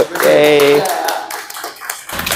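Scattered handclapping from people in a room, with a voice calling out a held note over the first second.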